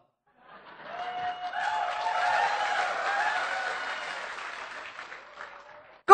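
Audience applause that starts about half a second in, swells to a peak and then slowly dies away, with some voices from the crowd mixed in.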